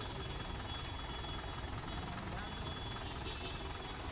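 A vehicle engine running steadily at low speed amid street noise, with faint voices in the background.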